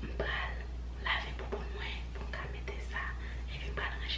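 A woman whispering, over a steady low hum.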